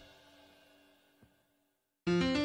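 Near silence: the last ring of the channel's logo jingle fading away over the first second, then one faint click.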